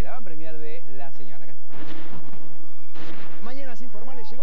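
Speech interrupted, about a second and a half in, by a burst of loud noise lasting about a second, then a second, shorter burst, before the speech resumes.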